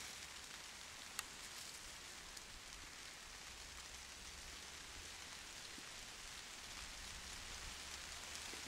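Faint, steady hiss with a single sharp click about a second in.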